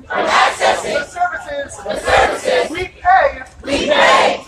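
A crowd of protesters chanting in loud, shouted bursts of many voices together.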